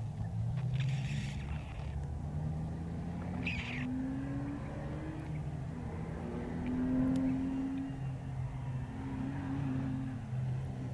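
Opel Astra race car's engine heard from a distance, revving up and down repeatedly as the car accelerates and slows through a slalom course.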